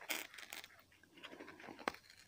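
Faint scratching and small clicks of a fine metal tool picking at old glue and filling on a doll's arm, with a sharper click near the end.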